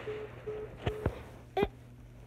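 iPhone FaceTime Audio call beeping as the call goes unanswered: three short electronic beeps on one pitch, about half a second apart, followed by two light clicks. A girl's voice says "beep" near the end.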